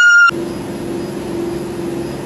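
A woman's high-pitched scream cuts off sharply about a third of a second in. It is followed by a steady mechanical hum with a held tone and a hiss: a treadmill's motor and belt running.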